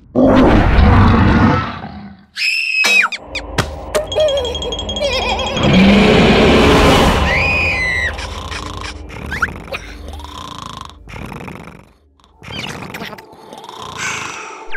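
Cartoon sound effects and character voice noises: a loud roaring cry at the start, then short high whistle toots about three and seven seconds in, from the whistle that Red has swallowed, between other squeaky vocal noises.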